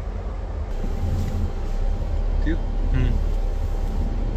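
Inside a Hyundai car's cabin: the engine running with the front defogger fan blowing, a steady low rumble under an even hiss.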